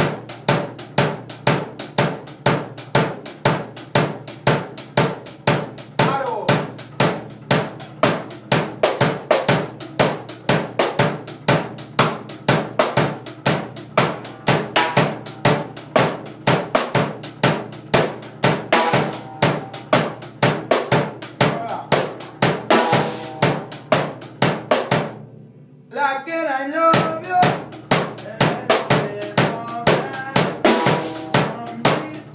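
Acoustic drum kit played in a steady reggae groove, with snare, bass drum, hi-hat and cymbal strikes in an even rhythm. The playing breaks off briefly near the end and then starts up again.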